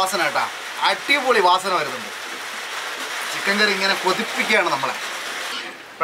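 A voice talking over a steady sizzling hiss from chicken and tapioca masala cooking in a pot. The hiss drops away shortly before the end.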